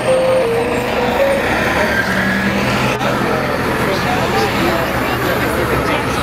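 Voices of a crowd talking over a steady low rumble.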